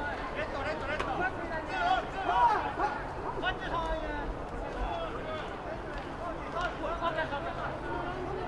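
Several overlapping, distant voices: players and sideline calling out and shouting, with general crowd chatter at an American football field.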